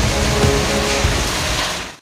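Strong storm wind and heavy rain blowing in a dense, rushing noise, with music underneath; everything fades out quickly at the very end.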